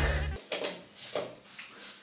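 Background music cuts off about half a second in. Then come a few faint knocks and clicks of someone walking to the wall and plugging in the Christmas-tree fairy lights.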